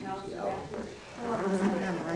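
Indistinct, murmured conversation from voices that the recogniser could not make out. It is loudest in the second half.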